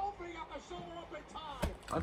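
Faint background speech, then a single sharp knock about a second and a half in.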